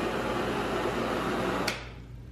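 Butane jet torch lighter burning with a steady hiss from its blue jet flame; about a second and a half in, a sharp click as it is shut off, and the hiss dies away.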